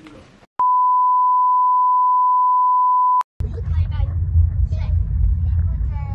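A steady electronic beep at one pitch, starting under a second in and lasting about two and a half seconds before it cuts off abruptly. After it comes the rumble of a car cabin with children's voices.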